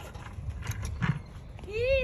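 A child's high-pitched vocal sound near the end, rising then falling in pitch, over faint low outdoor rumble and a couple of soft knocks.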